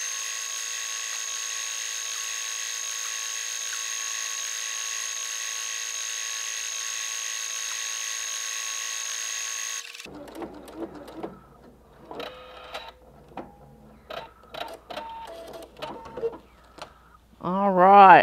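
Pfaff Performance Icon computerized sewing machine running a decorative stitch at a steady speed. Its motor whine rises briefly at the start, holds even for about ten seconds and stops suddenly. Scattered clicks and light knocks follow.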